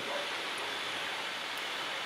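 Steady, even hiss of room noise with no speech or other events: room tone.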